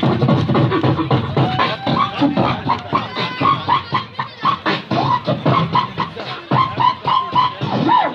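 Beatboxing into a handheld microphone: a fast, dense run of vocal kick and snare hits, with short pitched vocal sounds woven between them in the second half.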